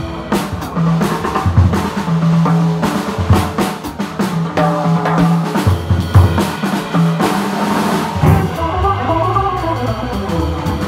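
Jazz organ trio playing a swing tune live: a drum kit with frequent snare and rim hits, the organ's walking low notes, and a hollow-body electric guitar, with a run of higher melodic notes near the end.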